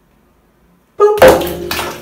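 Bath bomb dropped into a full bathtub, landing with a sudden loud splash about a second in, then water sloshing and settling.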